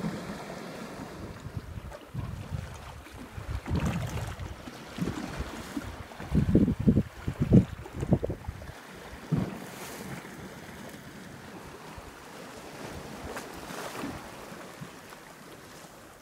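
Wind buffeting the microphone in gusts, strongest in the first half, over sea waves washing against a rocky shore.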